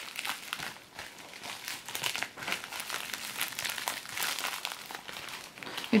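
Plastic packaging being handled and unwrapped around a false-eyelash case: irregular small crackles throughout.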